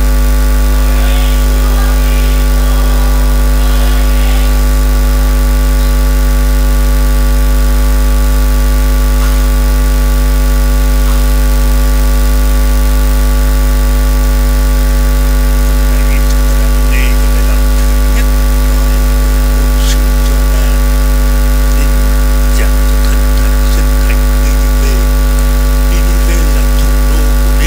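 A loud, steady electrical hum with a buzzy ladder of overtones that does not change at all.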